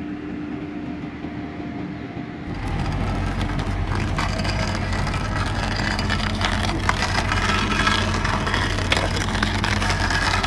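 Fecon Stump-X excavator-mounted stump grinder: a steady machine hum, then about two and a half seconds in the cutter bites into the stump and the sound gets louder, a steady low drone under a dense crackle of wood being chipped apart.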